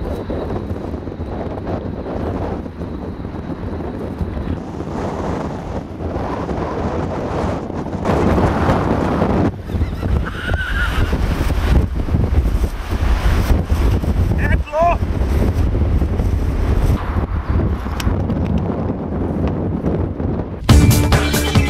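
Strong wind buffeting the camera microphone, gusting harder from about eight seconds in. Two brief pitched calls sound in the middle.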